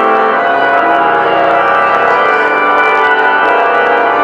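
Church organ music playing sustained, held chords.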